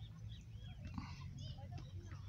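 Faint birds chirping: short, arched calls scattered throughout, over a low steady background rumble.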